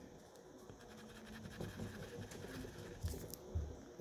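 Wax crayon scribbling on paper, a faint scratchy rubbing with a few soft knocks, as a small swatch box is coloured in.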